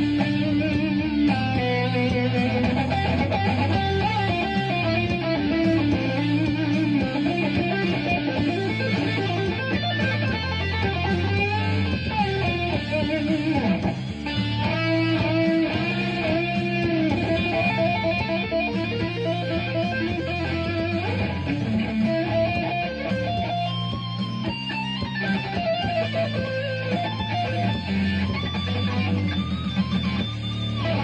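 Fender Stratocaster electric guitar shredding: fast lead runs of quickly moving notes.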